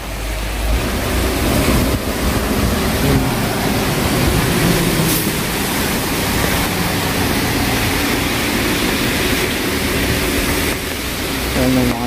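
Rain and traffic on a wet street: a steady hiss of tyres on the wet road as a small bus and a pickup truck drive close past.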